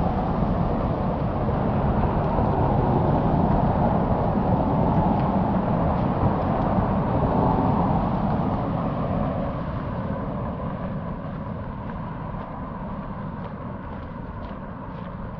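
Road traffic on a city street: steady engine and tyre noise from passing vehicles, fading away gradually over the last few seconds.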